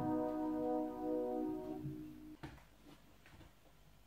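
A held piano chord dying away over the first two seconds, then a sharp click and a couple of fainter ones from the plastic Lego parts being handled.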